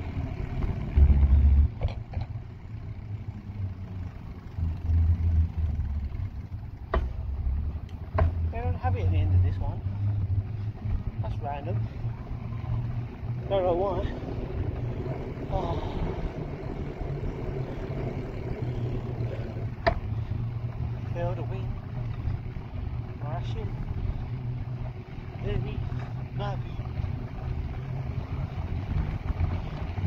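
Wind buffeting a handlebar-mounted phone's microphone on a moving bicycle: a steady low rumble with louder surges. Short vocal sounds from the rider come through now and then, and there are a few sharp clicks.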